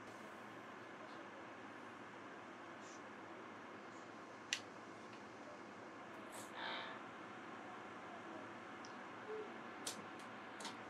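Soleus Air 8000 BTU portable air conditioner running on fan only, a steady low hiss of moving air while the compressor has not yet started. A sharp click about four and a half seconds in, and a couple of fainter ticks near the end.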